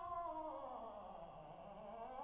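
Operatic tenor voice holding a long note whose pitch slides steadily down over about a second and a half, then begins to climb again near the end.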